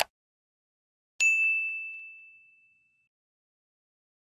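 A single bright bell-like ding, a subscribe-button notification-bell sound effect, struck once and ringing out as it fades over about a second and a half.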